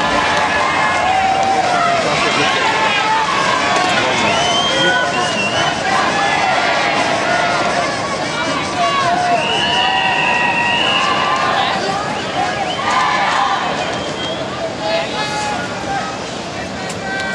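Large crowd of spectators at a swimming stadium calling out and chattering, many voices overlapping, with one higher call held for about two seconds near the middle. The crowd noise gradually dies down toward the end as the swimmers get set for the start.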